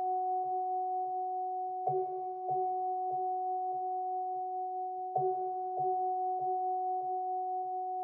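Minimal instrumental synth music: a sustained two-note drone an octave apart, with soft pulses about every 0.6 s and a stronger accent roughly every three seconds.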